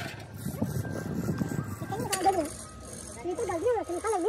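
Pieces of scrap iron clinking and rattling against one another and the steel wheelbarrow pan as they are handled. In the second half, two wavering, warbling voice-like calls.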